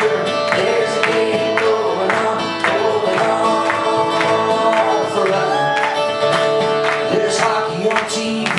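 Live folk song played on two guitars: an acoustic guitar strummed in a steady rhythm, about two strokes a second, with held notes sounding over it.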